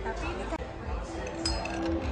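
Faint background chatter with a single sharp clink of tableware, with a brief ring, about one and a half seconds in; music begins to come in during the second half.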